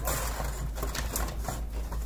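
Tarot cards being handled by hand: a run of quick, irregular clicks and flicks of the card stock.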